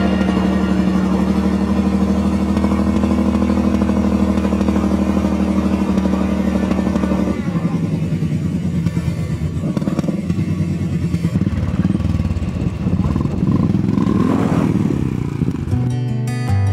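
Motorcycle engine held at high revs while the rear tyre spins on a dusty, gravelly surface in a burnout, the revs changing and surging in the second half. Background music plays along with it.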